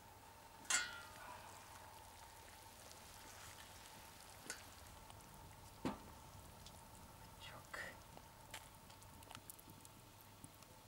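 Metal cauldron lid lifted off with a clank and brief ring about a second in, then a faint sizzle over the simmering broth, with a plop near six seconds as vegetables drop into the pot and a few light knocks after.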